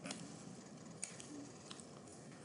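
A few faint, sharp computer mouse clicks over quiet room hiss, one near the start and a couple about a second in, as a duplicated shape is grabbed and dragged smaller.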